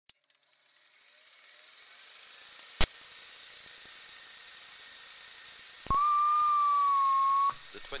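Old-film countdown leader effect: hiss of worn film that builds up, with crackling clicks at the start and one sharp pop a little under three seconds in. Near the end comes a single steady beep of about a second and a half.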